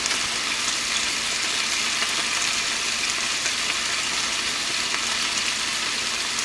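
Chicken frying in a pan, a steady sizzle with no breaks.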